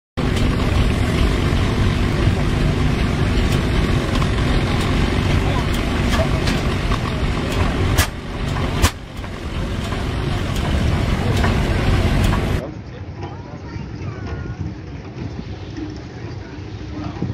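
Large antique flywheel tractor engine running loudly as a dense low rumble, with two sharp cracks at about eight seconds and again just under a second later. Near the end the rumble stops abruptly and leaves a quieter background with faint voices.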